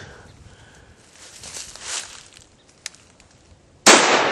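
Rustling and shuffling in brush, then one sharp, loud gunshot just before the end.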